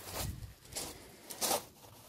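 Footsteps crunching on a gravel path, two steps about a second and a half apart.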